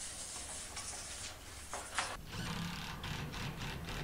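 A long steel roofing panel scraping and rattling as it is slid up onto the roof. A sharp click comes about two seconds in. Then a cordless DeWalt impact driver runs with a pulsing rattle, driving a screw into the metal roofing.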